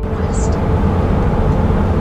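Steady road noise inside a Sprinter van RV cabin at highway speed, mostly a low rumble of engine, tyres and wind.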